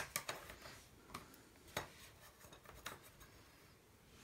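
Thin wooden strips being handled on a cutting mat: a few faint, scattered clicks and taps as the wood is set down and moved about.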